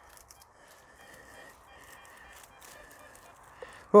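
Garrett Ace Apex metal detector sounding a faint, high-pitched target tone that swells and fades with each pass of the coil over a strong signal, with light crackles of dry stubble against the coil.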